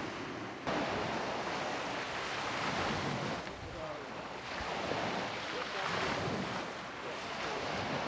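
Sea surf on a pebble beach: waves breaking and washing back, swelling and falling away every couple of seconds, louder from just under a second in.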